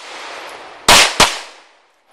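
Two pistol shots about a third of a second apart, a little under a second in, each trailing off in an echo. Before them, the echo of a rapid string of earlier shots is still dying away.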